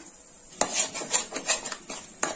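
Metal-on-metal scraping and tapping as ground masala paste is emptied from a steel mixer-grinder jar into a pan: a quick run of about half a dozen scrapes and knocks, starting about half a second in.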